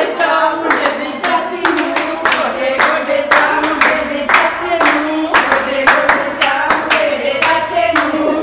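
Group singing a Punjabi giddha folk song, accompanied by rhythmic hand-clapping that keeps the beat.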